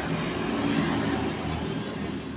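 Shimano Ultegra 2500S spinning reel being cranked by hand, its gears and rotor giving a steady whirr; the seller describes the reel as running smoothly.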